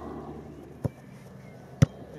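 Two sharp thuds of a football being struck, about a second apart, the second louder.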